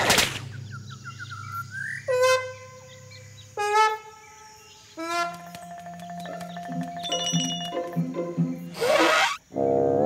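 Cartoon soundtrack of music and sound effects: a swoosh at the start, a rising slide and several held notes in the middle, and another swoosh near the end.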